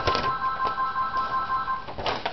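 A steady electronic tone on a few stacked pitches, slightly pulsing, sounds for almost two seconds and then stops. A few crisp rustles of paper being handled come at its start.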